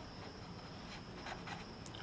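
Marker pen writing on paper: faint, short scratching strokes as the letters are written.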